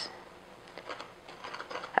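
Faint gritty scratching and light ticks as a glass rim is twisted in a plate of granulated sugar, starting a little under a second in.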